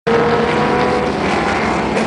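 A rally car's engine held at high revs while the car drifts through a dirt corner, giving a loud, steady note. The strongest tone fades about a second in.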